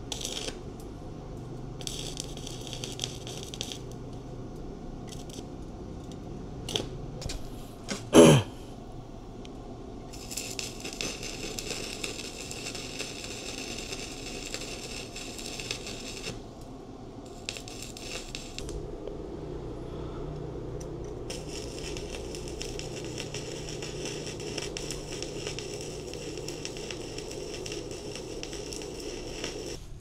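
Arc welding on a steel tube rack: the welding arc crackles and hisses in several runs of a few seconds each, with pauses between beads. One loud clunk about eight seconds in.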